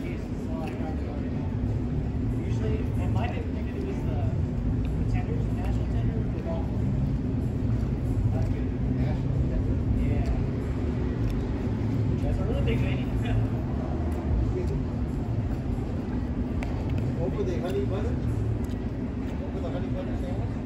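Steady low rumble of outdoor background noise, with faint voices of people talking in the background.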